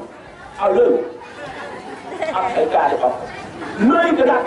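Speech: a man talking into a microphone, with crowd chatter under it.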